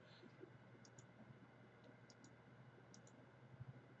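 Near silence with a few faint computer mouse button clicks, some in quick pairs.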